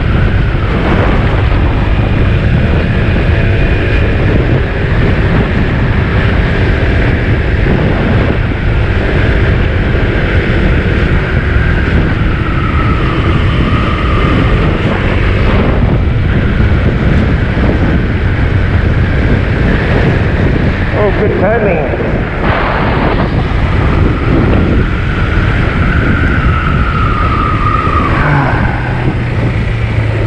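Wind rushing over the camera microphone with a Honda PCX 125 scooter's single-cylinder engine running underneath as it is ridden. A faint high whine rises and falls twice as the scooter changes speed.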